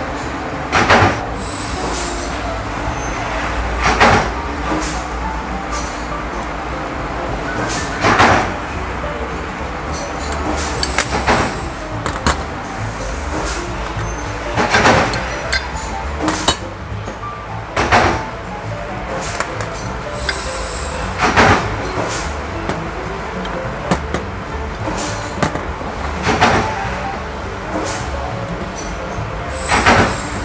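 Sharp metallic clinks and knocks every few seconds as steel press-die parts and bolts are handled and set down on a metal workbench, over a continuous low hum.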